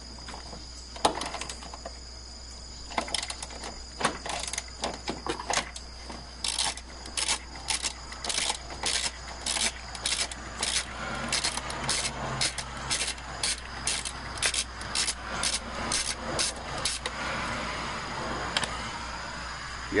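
Socket ratchet clicking in short repeated strokes, about two a second, as a 13 mm bolt is backed out on a 6-inch extension. Crickets chirp steadily in the background.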